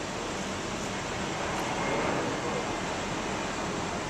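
Steady background wash of city street traffic, with no distinct events, swelling slightly about two seconds in.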